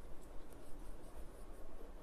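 Faint, soft scratching in short, irregular strokes over low background noise.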